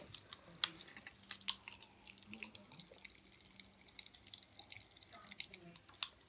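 Pop Rocks popping candy crackling in Sprite: a faint, irregular scatter of tiny pops and clicks.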